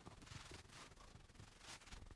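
Faint rubbing of a stylus drawing on a tablet screen: a few short strokes.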